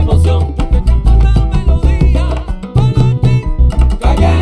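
Baby bass, an electric upright bass, plucked in a Latin groove, its deep notes changing every fraction of a second. It plays along with a full band mix that has percussion and a melody line.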